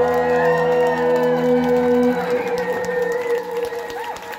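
A live rock band's final chord ringing out on electric guitar, its lower notes dying away about halfway through while one high tone carries on, as the crowd begins to whoop and cheer.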